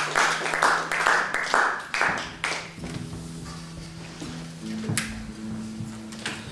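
Audience applause dying away over the first two to three seconds, then a guitar being tuned: single plucked notes ring and are held, with a sharp click near the end.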